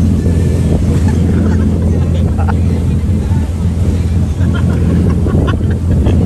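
Steady low drone of a motorboat's engine, heard from on board.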